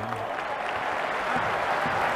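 Football stadium crowd in the stands applauding, a steady even wash of clapping and crowd noise.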